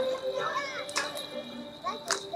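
Children's voices chattering and calling out in a crowd, with sharp beats about a second apart.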